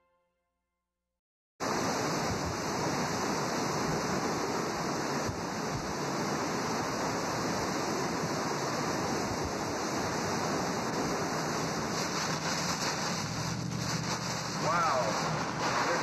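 Hurricane Katrina's wind and driving rain as a steady rushing noise, starting abruptly after a second and a half of silence. Near the end a brief wavering tone rises over it.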